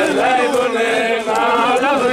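A group of men singing a Hasidic dance tune together, several voices at once, with some talking mixed in.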